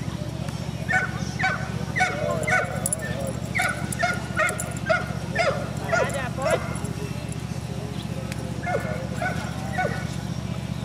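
A dog barking repeatedly in short, sharp barks, about two a second, for some five seconds, then a pause and three more barks near the end.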